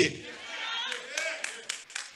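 Church congregation responding to the sermon: voices calling out quietly, then a few scattered hand claps, about four, in the second half.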